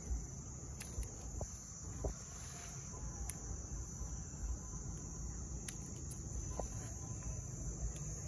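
Steady high-pitched chirring of insects, with a few faint, sharp snips of pruning shears cutting off the shoot tips of a mai vàng bush.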